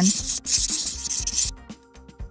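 Cartoon pencil-drawing sound effect: one scratchy stroke about a second long, starting about half a second in, as a pencil draws lines on paper.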